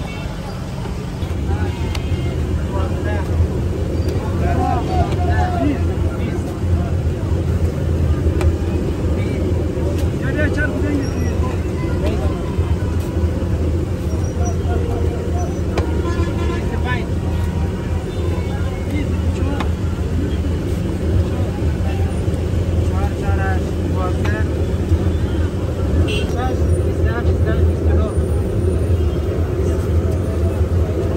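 Busy street ambience: a steady low rumble of road traffic that swells about a second in and holds, with scattered voices of people nearby.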